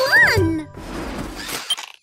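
Cartoon soundtrack: background music with a short, high, rising-and-falling vocal call at the start, then about a second of hissing from a cartoon jetpack setting down, and a brief high beep near the end.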